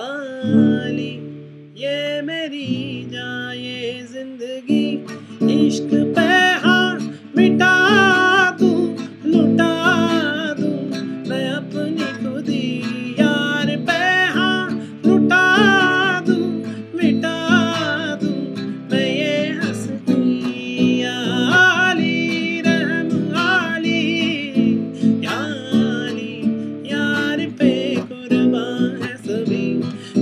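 A man singing a Hindi film song to his own strummed acoustic guitar in open minor and major chords, the voice carrying a wavering, ornamented melody over the chords.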